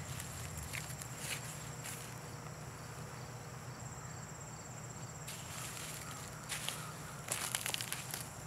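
Footsteps in flip-flops on grass and soil, with a few soft scuffs and rustles scattered through, over a quiet outdoor background.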